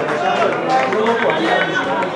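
Several voices calling and talking over one another during a football match, players and people along the touchline shouting across the pitch.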